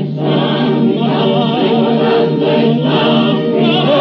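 Operatic recording: a chorus singing with orchestra under a sustained low note, and a solo voice with a wide vibrato entering near the end.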